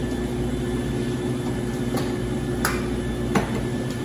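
Steady low hum of café equipment, with three sharp metal knocks in the second half as an espresso portafilter is readied.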